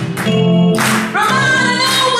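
Church choir singing a gospel song in held, gliding notes.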